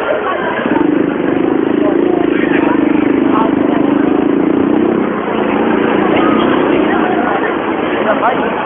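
A motorcycle engine running steadily close by, starting about a second in and fading after about five seconds, over the chatter of a street crowd.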